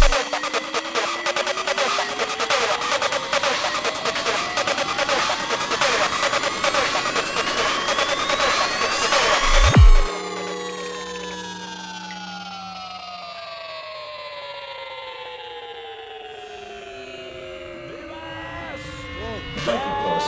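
Psytrance electronic music: a fast, dense beat with pitch sweeps rising for about ten seconds to a deep bass hit. It then drops into a quieter breakdown with long falling sweeps and held tones. Voices chanting come in near the end.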